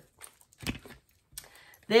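Faint handling noises of a leather bag strap being picked up, with a single short click about two thirds of a second in.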